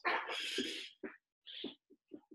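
A man's breathy, wordless vocal sounds: a long huff of breath lasting about a second, then a few short, faint breath and mouth sounds.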